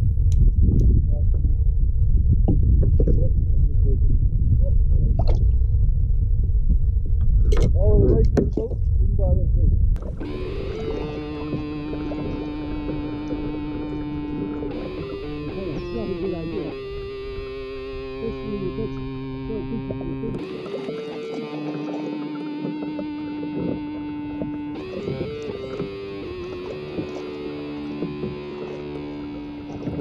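Wind buffeting an action-camera microphone, heard as a loud low rumble with a few brief crackles. About ten seconds in it cuts off suddenly to quieter background music of held notes that change every few seconds.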